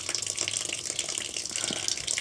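Water running steadily from an opened valve on a solar batch water heater's outlet line, flowing through to flush the cooled water out of the pipe before a temperature reading.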